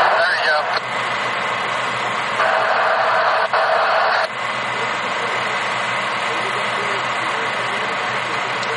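Railroad radio scanner speaker: two short bursts of thin, garbled two-way radio voice in the first half, then a steady radio hiss with a low hum underneath.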